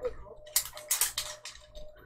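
Hands prying and twisting at the lid of a metal Poké Ball tin that resists opening, giving a run of short scraping clicks.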